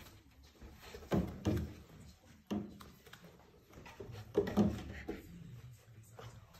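A few short knocks and scuffs from puppies moving on a small chain-hung wooden bridge, its boards shifting under their paws. The clearest sounds come about a second in, at two and a half seconds and at four and a half seconds.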